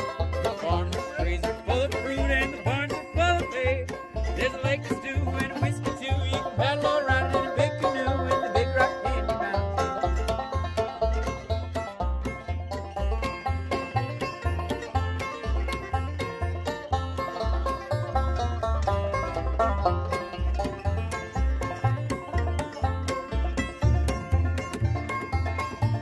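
Acoustic string band playing: banjo picking a busy melody over strummed acoustic guitar, with an upright bass plucked in a steady beat of low notes.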